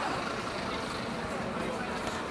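Busy city street ambience: steady traffic noise with the chatter of passing pedestrians.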